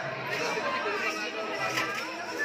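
Many people talking at once in an echoing hall: a steady crowd chatter of overlapping voices.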